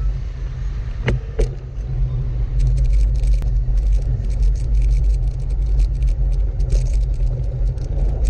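Heavy wind rumble on the handlebar-mounted action camera's microphone as a Ridley X-Trail gravel bike rolls along, with two sharp knocks about a second in. From about two and a half seconds in, a fast crackle and rattle of tyres on loose dirt and gravel joins it.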